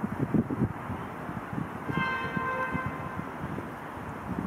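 Wind buffeting the microphone in irregular low gusts. About halfway through, a faint steady pitched tone is held for about a second.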